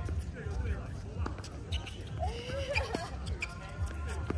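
Tennis rally: a few faint pops of the ball on racket strings and court from the far end, with a short vocal grunt or call around the middle. Wind rumbles on the microphone.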